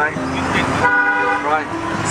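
A car horn sounds one steady note for about a second in the middle, over passing road traffic.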